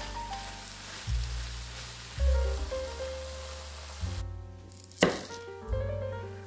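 Beef strips sizzling as they fry in a wok, with a steady hiss under background music; the sizzle stops about four seconds in. About a second later a knife cuts through an onion and strikes a wooden cutting board once, sharply, the loudest sound here.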